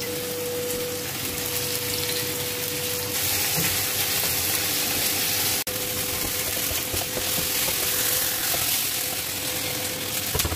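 Pieces of lamb testicle sizzling in hot oil in a frying pan, a steady hiss that grows louder about three seconds in, with a faint steady hum underneath. The sound breaks off for an instant once, near the middle.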